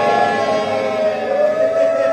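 Mournful chanted lament in which voices hold long, drawn-out steady notes without words, with a fresh note coming in about halfway through.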